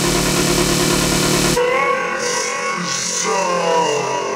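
Trance music: a dense, driving beat with heavy bass cuts out about a second and a half in. What is left is a beatless breakdown of gliding, sweeping synth tones.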